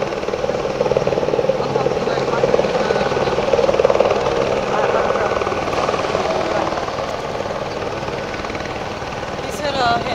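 Helicopter flying low along the railway power lines, its rotor beating rapidly. It grows louder to a peak about four seconds in, then fades as it moves away.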